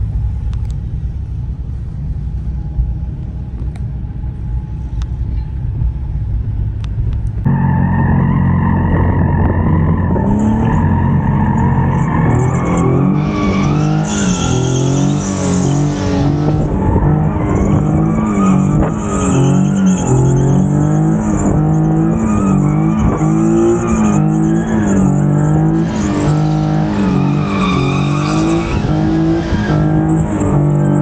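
2017 Nissan 370Z's 3.7-litre V6 running low and steady, then from about seven seconds in revving up and down over and over as the car drifts. Tyres squeal on and off over the engine.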